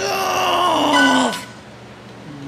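A person's voice holding one long drawn-out note that sinks slowly in pitch and stops about a second and a half in.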